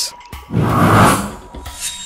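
A noisy sound effect swelling up and dying away over about a second, over background music, during an on-screen slide transition.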